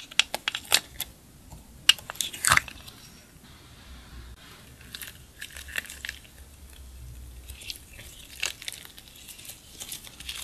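Sharp plastic clicks and clacks as a clear plastic compartment case of slime is handled and opened, loudest about two seconds in, then soft squishing and quick small clicks of yellow slime being kneaded and stretched in the hands.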